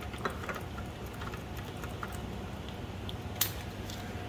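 Light clicks and taps of glass shake flasks being handled on a lab bench over a steady low room hum, with one sharper click about three and a half seconds in.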